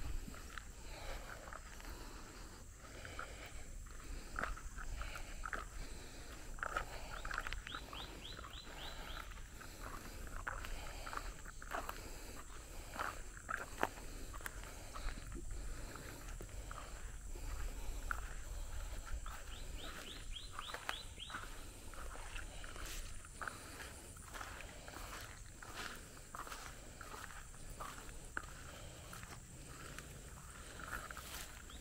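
Footsteps walking through grass and dry field stubble, with a low rumble from the handheld microphone. Twice, a quick run of rising chirps from an animal, and a faint steady high whine throughout.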